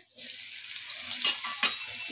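Chopped ginger, garlic and cumin seeds sizzling in hot oil in an aluminium kadai, a steady hiss that starts as the ginger goes in, with a few sharp clicks about a second and a half in.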